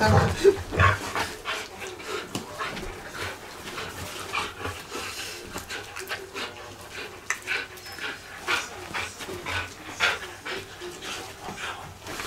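A border collie panting during rough play, tugging at a cushion, with irregular short scuffs and rustles of bedding and cloth throughout.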